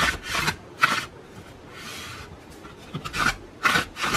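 Cardstock pull tab sliding in and out of a handmade flip card: paper rubbing on paper in about six short, scratchy swishes, one of them softer and longer near the middle.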